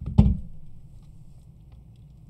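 A sharp click and then a heavy thump a fifth of a second later, followed by a faint steady low hum.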